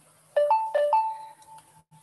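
A short electronic two-note tone, a low note stepping up to a higher one, played twice in quick succession, the second high note held longer before fading.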